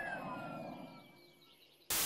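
Faint falling chirps from a cartoon soundtrack for under a second, a moment of near silence, then loud television static that cuts in abruptly at the very end.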